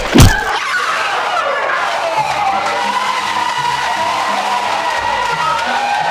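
A loud blow right at the start, then a group of people screaming and shouting together in a continuous din. Background music with a steady bass line comes in about two seconds in.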